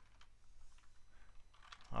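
Typing on a computer keyboard: a run of quiet, irregular keystrokes as a line of text is entered.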